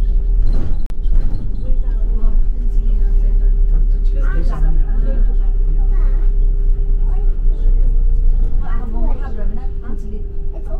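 Double-decker bus in motion, heard from inside: a steady low engine and road rumble with a constant hum held over it. Passengers' voices talk in the background around the middle and near the end, and there is a brief dropout about a second in.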